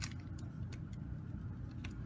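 A few faint clicks of hard plastic action-figure parts being handled and pushed together as a thigh piece is plugged in, over a steady low background hum.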